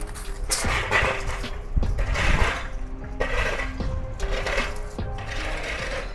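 Soft background music with held notes that shift in pitch, over several short bursts of rustling, hissy noise.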